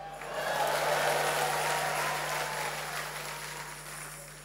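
A congregation applauding, swelling in the first second and dying away toward the end.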